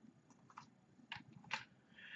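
Near silence with a few faint, short computer clicks, about three, as a list is pasted into a spreadsheet.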